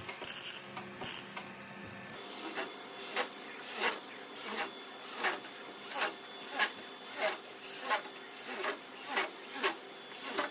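Corded electric drill cutting into the sheet-metal body panel, starting about two seconds in. It makes a rasping sound that pulses about three times every two seconds.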